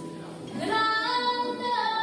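A woman singing a Neapolitan song, coming in about half a second in with a rising phrase that settles into a long held note, over mandolin and guitar accompaniment.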